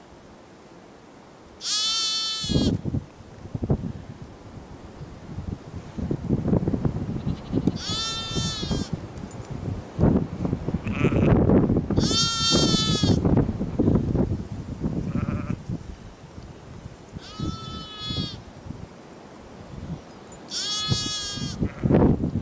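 Lamb bleating five times, each high-pitched call about a second long and several seconds apart. Wind rumbles on the microphone between the calls.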